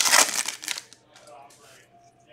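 A foil hockey card pack wrapper crinkling loudly as it is torn open by hand. The crinkling fades out about a second in, leaving faint rustling as the cards are handled.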